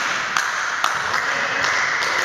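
A football striking hard surfaces three times in a large hard-walled sports hall, each sharp knock ringing briefly over a steady din from the hall.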